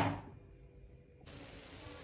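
A single sharp knock that dies away within about half a second, followed by near-quiet and then a faint steady hiss.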